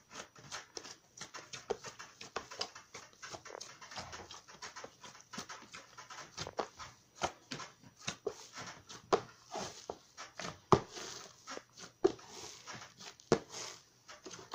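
Hands kneading and knocking back a risen, oil-enriched dough in a plastic basin: an irregular run of soft squelches and slaps, several a second, with a few louder smacks in the second half.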